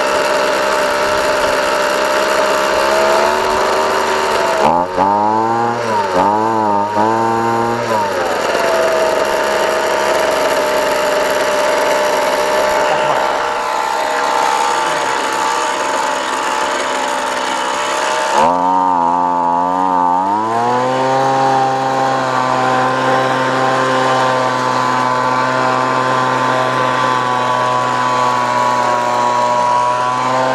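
2007 Ryobi handheld two-stroke gas leaf blower engine running at a low steady speed, revved in three quick blips about five seconds in, then throttled up a little after halfway and held at a higher steady speed. The owner thinks its running sounds like it probably needs a carburetor overhaul.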